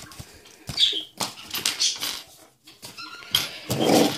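Papers and small parts being handled on a table: light clicks and rustles, with a short high-pitched whine about a second in and another brief pitched sound near the end.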